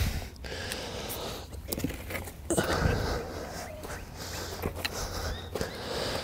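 Light handling noise: scattered small knocks, clicks and rustles as tools and the plastic valve box are moved about. There is no steady motor sound, so the drill is not running.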